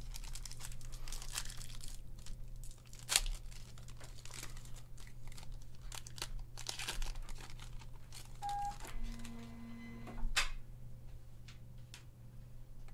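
Foil trading-card pack wrapper crinkling as it is handled and torn open by hand. There are two louder, sharp sounds, one about three seconds in and one near the end.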